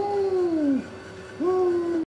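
A person's long vocal moans with the mouth under a soft-serve frozen-yogurt spout, twice: each swells quickly and then sinks in pitch, the second starting about a second and a half in.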